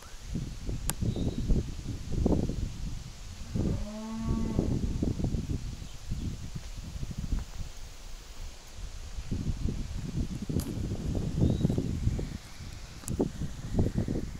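Gusty wind buffeting the microphone, rising and falling, with a cow mooing once, about a second long, roughly four seconds in.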